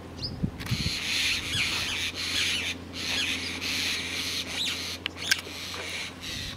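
Birds chirping and twittering continuously, with short pauses, over a steady low hum.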